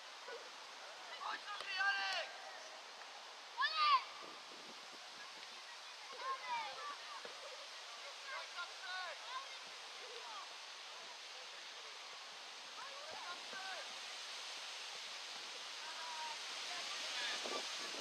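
Distant shouts from players and coaches on a football pitch, loudest about two and four seconds in, over a steady rush of wind noise that grows louder near the end.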